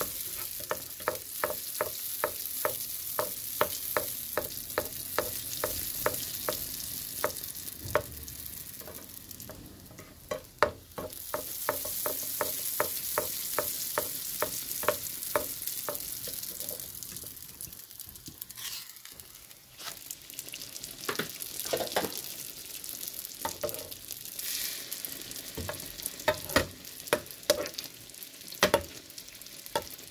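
Sfenj dough frying in hot oil in a nonstick pan: a steady sizzle with a fast, even run of light taps, about two or three a second, as hot oil is repeatedly spooned over the top with a wooden spatula. In the second half the taps thin out and come irregularly.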